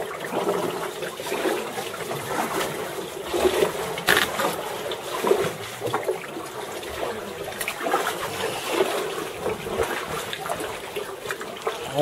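Seawater splashing and trickling around a sea kayak as it moves through a low sea cave, in irregular small splashes.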